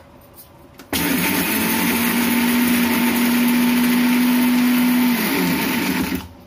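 Electric countertop mixer grinder with a steel jar, switched on about a second in: its motor runs with a steady hum under loud grinding noise as it dry-grinds the coriander-powder mix. Near the end it is switched off and the hum drops as the motor winds down.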